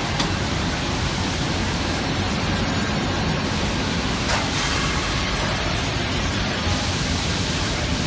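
Steady, loud, even hiss and rumble of a running controlled atmosphere aluminium brazing furnace line, with a faint click about four seconds in.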